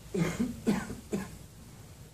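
A person coughing three times in quick succession, the coughs about half a second apart.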